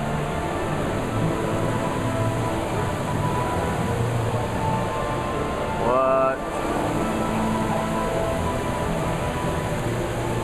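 Indoor water-wall fountain: a sheet of water falling steadily into its pool, under background music and crowd chatter. A brief rising tone stands out about six seconds in.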